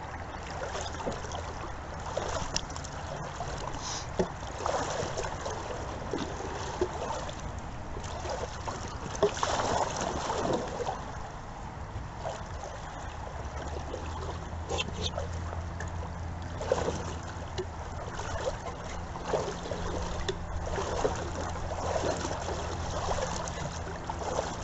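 Canoe paddles dipping and pulling through river water, with irregular splashing and trickling from the strokes and the moving hull, and a few sharp knocks.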